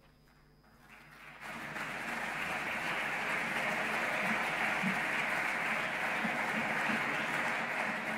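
A chamber full of senators applauding. The applause starts about a second in and holds steady.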